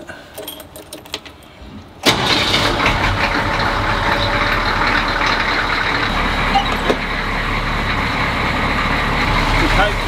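A 1991 AM General Humvee's V8 diesel engine starts suddenly about two seconds in, after a few faint clicks, and settles into a steady idle.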